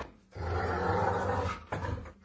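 A dog growling: one low, rough growl lasting about a second, then a short second growl near the end.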